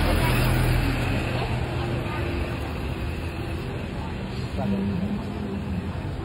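Busy street ambience: road traffic passing with a steady low engine hum, and the chatter of passers-by.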